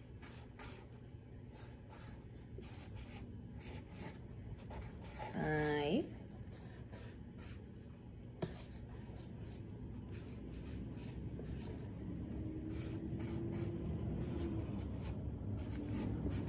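Marker pen drawing on paper: a run of short, irregular scratchy strokes as cloud outlines and numbers are drawn, with one sharp tick about eight seconds in.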